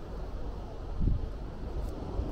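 Wind blowing across the microphone, a low rushing noise with a stronger gust about a second in.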